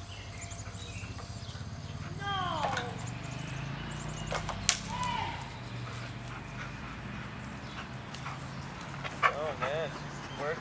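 Airedale terrier tugging at a stick stuck in a tree. There are short falling cries about two seconds in and again just before the end, and a couple of sharp cracks near the middle, over faint bird chirps and a steady low hum.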